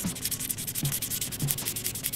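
Fine-grit sandpaper rubbed quickly back and forth in the response groove of a Yeti yo-yo, on a wet run-through to smooth the groove's edge against string wear. It comes as a fast, dense run of short scratchy strokes.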